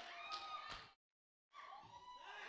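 Faint voices, broken by half a second of dead silence about a second in.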